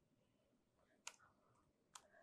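Near silence with two faint clicks, about a second in and just before the end: keys tapped on a laptop keyboard.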